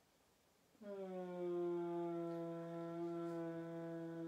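A woman's voice holding one long, steady low note, a sustained vocal tone or hum, starting about a second in after near silence.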